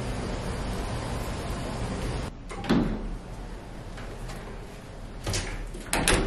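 An office door being opened and shut over a steady background rush: a short knock about halfway through and sharp clicks near the end.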